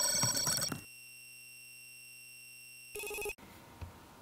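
Electronic intro jingle: repeating ringtone-like beeps, then a quieter steady held tone from about a second in, cutting off abruptly a little over three seconds in. Faint room noise with a click follows.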